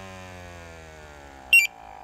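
Dräger X-am Mark II pump motor humming, its pitch slowly falling as the block test ends, then a single short electronic beep from the X-am 2500 gas monitor about one and a half seconds in, after which the pump runs on steadily.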